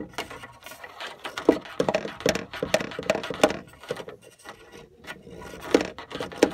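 Irregular scraping and light knocking on wood inside a narrow wooden wall cavity, several sharp clicks a second with short gaps, loudest about one and a half seconds in, around two to three and a half seconds in, and near the end.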